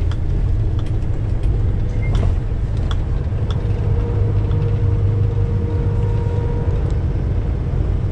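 Semi truck's diesel engine and road noise heard from inside the cab, a steady low drone while the truck rolls slowly, with a faint steady whine for a few seconds in the middle.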